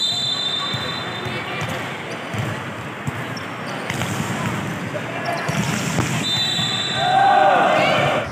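Volleyball rally in a gym: the ball is struck sharply several times over a steady din of spectator chatter, and voices shout louder near the end. A steady high tone sounds at the start and again in the last couple of seconds.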